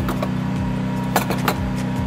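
Channel-lock pliers gripping and shifting a hose line under a truck's hood: a sharp click at the start and two more a little past a second in, over a steady low hum.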